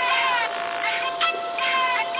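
Background music: short synthesized, voice-like phrases repeating about twice a second, some sliding down in pitch, over one steady held note.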